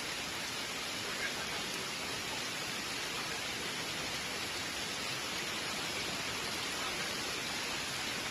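Fast floodwater rushing down a street in a torrent, a steady, even noise.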